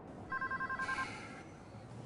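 Phone ringing with an electronic warbling trill: one ring of under a second, starting about a third of a second in.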